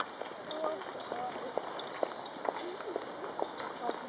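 Horses' hooves clip-clopping on a tarmac road as mounted King's Troop, Royal Horse Artillery horses walk past: a quick, uneven run of sharp hoof strikes.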